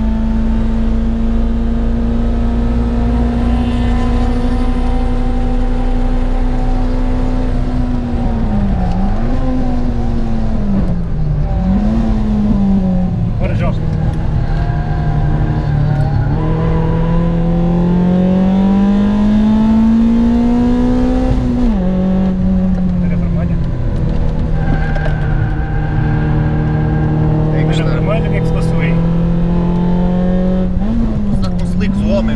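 A Citroën Cup race car's four-cylinder engine heard from inside the cabin, running hard at high revs on track. Around 9 and 11 seconds in the revs drop and jump back in quick blips as it downshifts. It then pulls in one long rising climb, drops sharply at an upshift about 21 seconds in, and holds steady with a short blip near the end.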